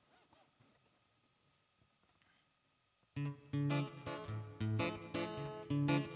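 About three seconds of near silence, then an acoustic guitar begins the introduction to a song, its chords played in a steady rhythm.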